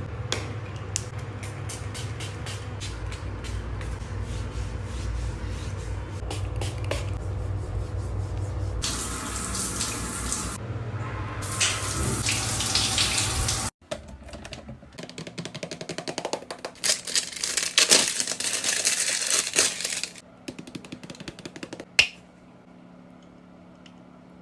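Water running from an overhead rain shower head in two loud hissing spells, about nine and about twelve seconds in, following a stretch of low steady hum with faint ticks. After a cut comes a rougher stretch of close-up handling noise, and a single sharp click near the end.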